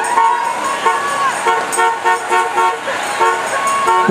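A rapid series of short horn toots at the same few pitches, several a second, with one longer held toot about a second in.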